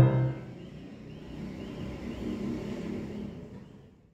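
Piano played four hands, its final chord ringing out and dying away. A low rumble then swells and fades before the sound cuts off at the end.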